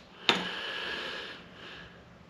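A man breathing out audibly between sentences: one breath about a second long that fades away.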